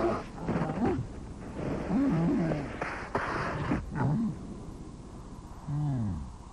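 Animated polar bear cubs making short grunting calls, about four of them, each bending up and down in pitch. A brief rushing noise a little after three seconds in goes with a bear sliding in the snow.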